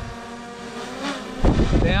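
Small folding quadcopter drone hovering low overhead, its propellers giving a steady multi-tone buzzing hum that wavers briefly in pitch. About a second and a half in, a loud rush of wind buffets the microphone as the drone comes down close for a hand catch.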